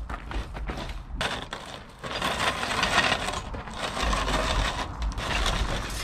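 Gravel crunching and grinding under the small wheels of a floor jack being pushed with a heavy Dana 60 front axle on it, with a steady stream of small clicks and scrapes.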